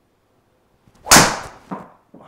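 A driver with a Fujikura Ventus Black 6S shaft swung hard and striking a golf ball: a short swish, then one loud, sharp crack of impact about a second in that fades quickly. A second, softer knock follows about half a second later.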